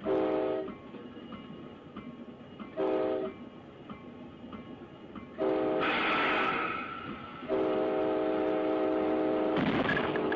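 Locomotive air horn sounding a chord of several notes in four blasts: two short ones about three seconds apart, then a long one and a second long one held on. A burst of hiss rises over the third blast, and the train's running rumble fills the gaps between blasts.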